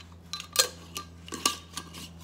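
Glass jar clinking and knocking as it is handled and set down: about six sharp clicks with a short ring, the loudest about half a second and a second and a half in.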